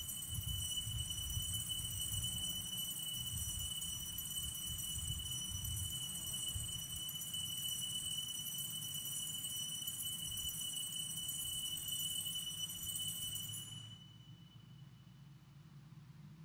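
Altar bells ringing in one long continuous peal at the elevation of the chalice during the consecration, stopping about fourteen seconds in.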